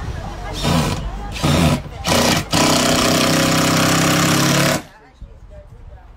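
Cordless drill working into the timber framing overhead: three short bursts on the trigger, then one steady run of about two seconds with a whining motor note that stops abruptly.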